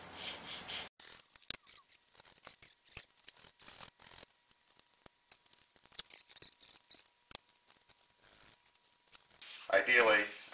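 A thin wooden plank rubbed along a sanding stick in a few short scraping strokes for about the first second. The sound then cuts off suddenly and is followed by scattered faint clicks and taps of the wooden model hull and plank being handled.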